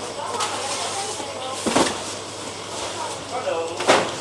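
Cardboard boxes and a plastic bag being handled and rummaged through, with two short sharp rustling knocks, one a little under two seconds in and one near the end, over a steady low hum.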